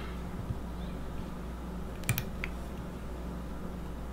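Steady low electrical hum, with two small clicks about two seconds in from hands working yarn and thread on a fly-tying hook.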